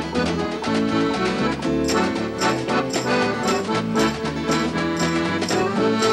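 Live acoustic folk band playing an instrumental break, with the accordion carrying the tune over guitar and bass. A percussion stroke lands about twice a second from about two seconds in.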